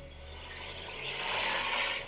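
A rushing noise swells over about a second and a half and cuts off suddenly near the end, over a low rumble at the start. It is a sound effect on an animated episode's soundtrack.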